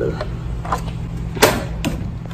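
A few light knocks and clicks from the plastic housing of a smart sprinkler controller being handled and pressed against the wall, the loudest about one and a half seconds in, over a steady low hum.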